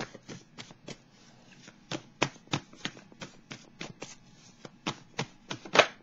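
A deck of tarot cards being shuffled by hand: a run of short crisp card snaps, about three a second and unevenly spaced, the loudest just before the end.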